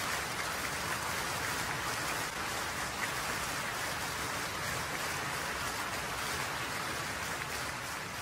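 Concert audience applauding, a steady, even clapping that does not let up.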